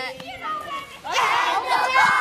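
A group of fifth-grade children's voices: a single voice at first, then about a second in many children break out loudly together, holding their pitches.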